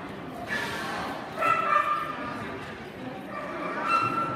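A dog yipping and whining: high-pitched cries about a second and a half in and again near the end, over a background murmur of voices.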